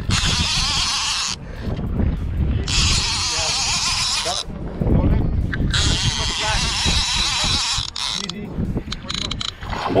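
Conventional fishing reel's drag buzzing in three runs of a few seconds each as a big fish pulls line off against a heavily bent rod, over a steady low rumble of wind on the microphone.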